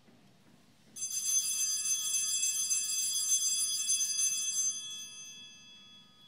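Altar bells rung at the elevation of the chalice, signalling the consecration at Mass: a bright, high ringing that starts about a second in, holds for about four seconds, then fades out.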